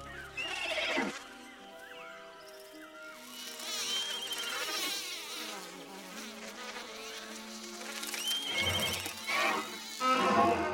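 Orchestral film score with held notes, overlaid with the buzz of flying insect creatures passing close. The buzz is loudest twice, as a swoop falling in pitch about half a second in and again near the end.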